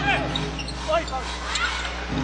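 Court sound from a live basketball game: a ball being dribbled during a one-on-one drive, with several short, high sneaker squeaks on the hardwood over a steady hum of crowd noise in the arena.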